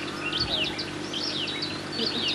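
Small birds chirping and twittering in the background: a run of short, quick high chirps and whistles, over a low steady hum.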